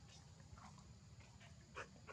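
A few faint, short squeaks from a macaque, the loudest just before the end, over a low background hum.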